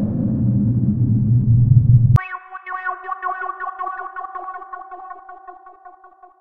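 Synthesized intro sound effect: a low rumbling whoosh swells for about two seconds and cuts off abruptly with a click, then an electronic chord rings out with a fast, fluttering echo that slowly fades away.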